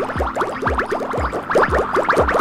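Electronic transition sound effect over music: a rapid run of short rising blips, many per second, over a low thudding beat about three times a second.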